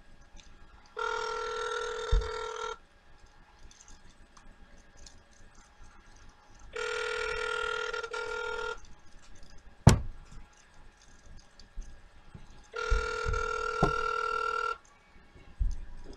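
Ringback tone of an outgoing call on a flip phone, ringing three times, each ring about two seconds long and about six seconds apart, with nobody answering. A sharp click comes about ten seconds in, and there are a few low knocks.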